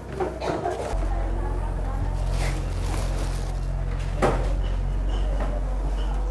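Granulated sugar scooped and poured into a plastic bowl on a digital kitchen scale, with soft pouring hiss and a knock about four seconds in. Under it runs a steady low machine hum that starts suddenly about a second in and is the loudest sound.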